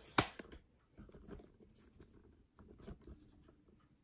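Camera handling noise: a sharp knock just after the start, then scattered soft clicks, taps and rubbing as the camera is picked up and carried.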